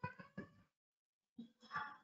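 A domestic cat meowing faintly twice, one short call at the start and another near the end, with light computer-keyboard clicks under them.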